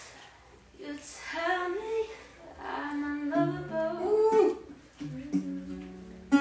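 A woman sings a gliding vocal melody. About halfway through, an acoustic guitar comes in with held notes and chords.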